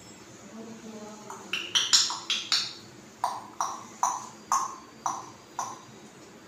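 African grey parrot making a string of short ringing pings. A quick run of higher pings comes first, then six lower ones about every half second.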